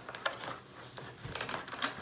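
Scattered light clicks and crinkles from a plastic baby-snack puffs canister being handled at its lid, with a quick run of clicks in the second half.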